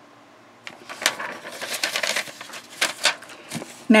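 A cardboard box and a paper packing slip being handled on a desk: an irregular run of paper crinkles, rustles and light knocks, starting a little under a second in.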